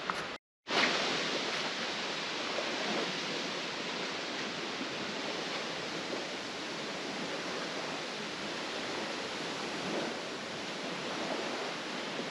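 Steady rushing of waves washing onto the shore of a wide stretch of open water, with wind, after a brief dropout of sound near the start.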